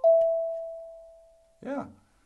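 A palm-sized steel tongue drum struck once with a mallet: one clear, bell-like note that rings out and fades away over about a second and a half.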